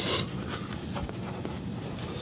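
A sheet of cardboard handled and turned in the hands, with a brief scraping rustle at the start and faint rubbing after it.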